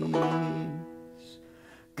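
Open-back banjo played under the tail of a held sung note, its plucked notes ringing and dying away to quiet.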